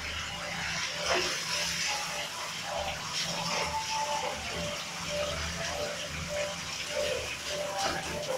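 Water spraying steadily from a handheld shower hose into a bathtub, a continuous hiss of spray and splashing.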